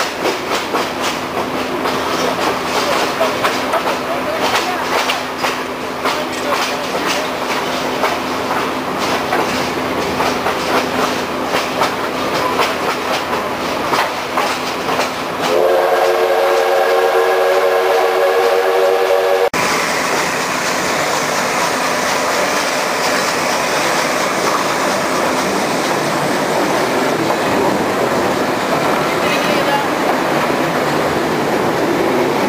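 Train wheels clattering over rail joints, heard from an open observation car, under a steady low hum. About halfway through, the steam locomotive's whistle blows one long chord of about four seconds that cuts off suddenly, and the rolling noise runs on more evenly afterwards.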